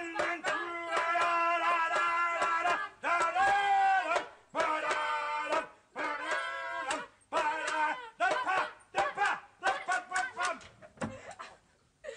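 Children's voices sing out the parts of a symphony without words, holding long loud notes in phrases. Near the end they break into short, choppy bursts.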